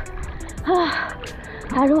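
A woman's voice at the water's surface: a short breathy call a little over half a second in, then "hello" near the end, over a steady hiss of pool water lapping and splashing at the microphone.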